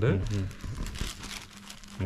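Silk saree fabric rustling and crinkling as it is unfolded and smoothed out flat by hand.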